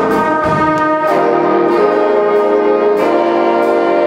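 Jazz big band of saxophones, trumpets and trombones playing slow sustained chords that change about every second, over a light cymbal keeping time.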